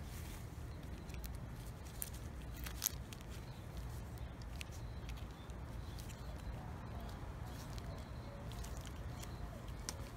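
Small wire cutters clicking and snipping a few times at the crimped steel top of an 18650 cell can, faint against a steady low background hum; the sharpest click comes about three seconds in.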